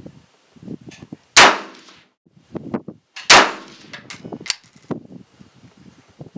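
Two rifle shots from a Sig Sauer 516 in 5.56 mm, about two seconds apart, each with a short echoing tail, and lighter clicks between them. The rifle fires and cycles without a failure to feed.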